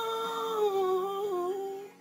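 A long hummed note, held steady and then dipping slightly in pitch about halfway with a small waver, stopping near the end, over faint background music.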